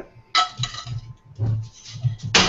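Metal spoon clinking against a ceramic plate and pan while sauce is spooned out: one ringing clink about a third of a second in, then a few fainter knocks.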